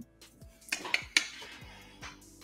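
Small hard objects clinking and knocking together as keepsakes are handled and set down, a few light clicks clustered about a second in.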